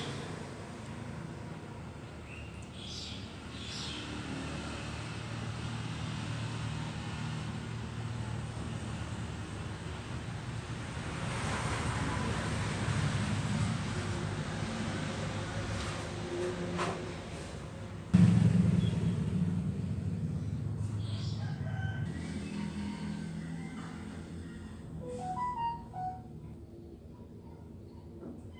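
A rooster crowing in the background over a steady low hum, with a few clicks and a sudden thump about two-thirds of the way through.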